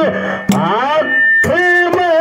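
Male voice singing into a microphone in a Kannada dollina pada folk song, with gliding notes that settle into a long held, wavering note, and a few sharp hand-drum strokes.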